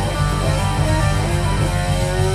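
Live rock band playing: an electric guitar plays single-note lead lines over steady bass and drums.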